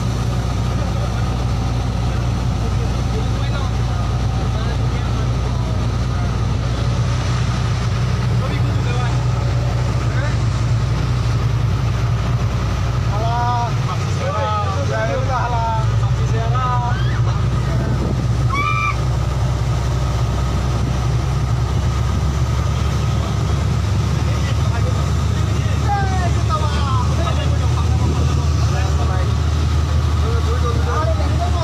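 Passenger boat's engine running steadily at cruising speed: a loud, unchanging low drone.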